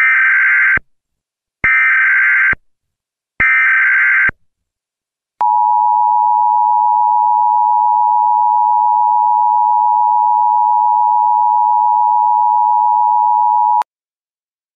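Emergency Alert System header: three short bursts of SAME digital data, starting about 1.7 s apart, then the steady two-tone EAS attention signal held for about eight seconds and cutting off just before the end.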